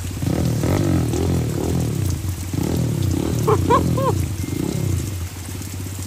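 A small dirt bike's engine catches just after the start and runs with uneven, rising and falling revs as the rider pulls away, over steady rain. A person laughs briefly in the middle.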